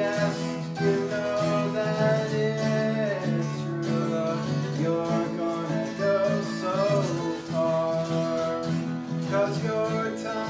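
Acoustic guitar music in a country style, played without words, with long held melody notes that slide in pitch twice.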